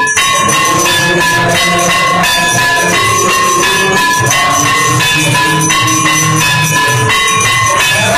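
Temple bells and drums sounding together for the aarti: a loud, steady, dense clanging with bell tones ringing over and over.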